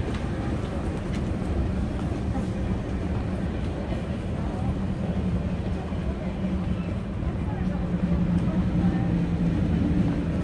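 A train running on the line by the platform: a low, steady rumble with a droning hum that grows stronger near the end, under people's voices.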